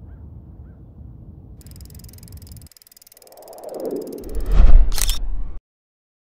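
Steady low outdoor rumble with a few faint chirps, which cuts off about two and a half seconds in. Then a logo sound effect: a swelling whoosh that builds into a loud, deep hit with a sharp camera-shutter-like click, and stops abruptly just before the end.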